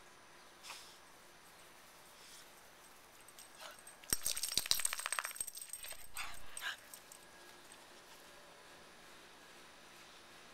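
A Boston terrier's metal collar tag jingling and rattling in a quick burst for about two and a half seconds, starting about four seconds in, as the dog moves about close by.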